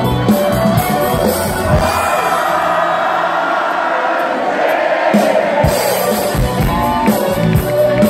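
Live rock band playing loud to a singing, cheering crowd, recorded from among the audience. Midway the drums and bass drop out for a few seconds, leaving mostly crowd voices and singing, then the full band comes back in.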